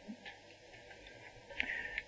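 Quiet room tone with a few faint clicks, a little louder near the end.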